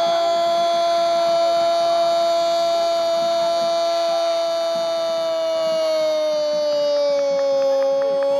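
A Brazilian football commentator's long, held 'gooool' cry: one unbroken note sustained on a single pitch, sagging slightly near the end and lifting again.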